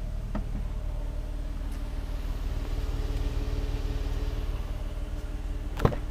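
Jeep Cherokee's 3.2L V6 idling with a steady low hum. Near the end comes a sharp click as the rear door handle is pulled and the latch releases.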